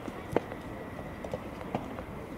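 Soft tennis ball impacts on the court, with one loud sharp pop about a third of a second in and several fainter taps after it.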